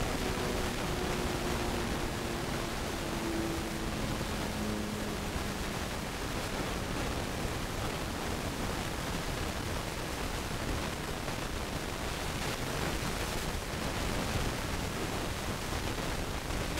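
Steady, even hiss with no rhythm to it. Faint held tones step in pitch during the first six seconds, then fade.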